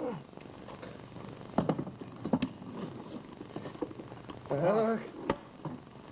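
A few sharp knocks, at about one and a half, two and a half and five seconds in, from the wooden box being handled at the table. A man's short vocal exclamation comes a little before the last knock.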